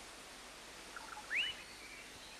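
A bird's short rising whistled call, after a couple of soft chirps, about halfway through, over faint steady forest background hiss.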